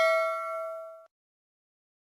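Chiming ding of a subscribe-button notification-bell sound effect, its ringing tones fading, then cut off abruptly about a second in.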